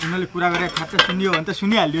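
Rapid metallic clinks and clanks over men's raised voices.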